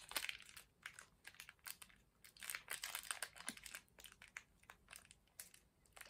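Faint, irregular crinkling of a blind bag handled in the fingers as the pin inside is felt through it.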